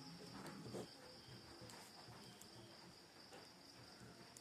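Near silence: a faint steady high-pitched trill, with a few faint ticks of a pen writing on paper.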